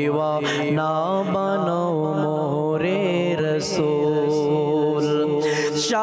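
A man singing an Islamic devotional naat with no instruments, in long held notes and bending melodic turns, over a steady low drone.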